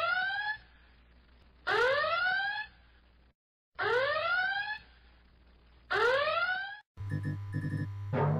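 Whooping alarm sound effect: four rising whoops, each under a second long, repeating about every two seconds. Near the end it gives way to a steady low electronic hum with flickering beeps.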